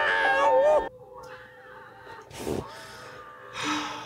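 Horror film soundtrack: a high, wavering, cry-like sound over music, which cuts off abruptly about a second in. After that the film audio is low, with a couple of faint brief sounds.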